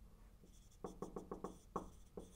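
Marker writing on a whiteboard. After a quiet first second comes a quick run of short taps and strokes, then one more stroke near the end.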